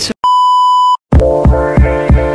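A single steady electronic beep, a pure high tone lasting under a second, then electronic intro music with a steady beat of about three a second starting about a second in.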